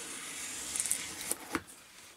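Plastic wrapping on a cardboard box rustling and crinkling as it is handled, followed by two light clicks about a second and a half in.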